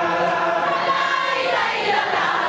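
Many voices chanting together in a steady, sustained religious chant, sung by a large congregation.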